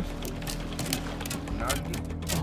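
A boat engine running at a steady low idle, with scattered light clicks and knocks from the tackle and boat as a heavy big-game reel is worked against a hooked goliath grouper.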